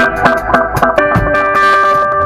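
Live band playing with electric guitars: quick picked notes and strikes, then a chord held ringing from about a second in.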